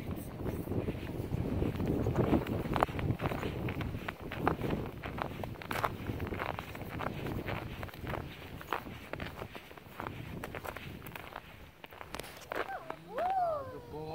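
Footsteps in thin snow, walking at an irregular pace. Near the end a brief high, gliding voice-like call.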